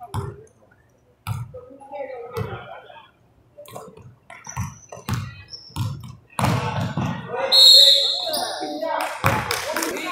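A basketball dribbled on a hardwood gym floor, in a string of uneven bounces about once a second, with voices echoing around the hall. About two-thirds of the way in, the voices and noise grow louder, and a short high squeal comes near the end.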